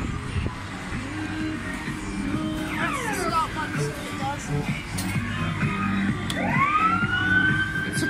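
Motorcycle kiddie ride's electronic siren sound effect, over the ride's music. A few quick falling wails come about three seconds in. Near the end a long wail rises and holds high.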